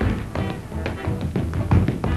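Tap dancing: quick, irregular clicks of tap shoes on a stage floor over a dance band playing with a steady bass.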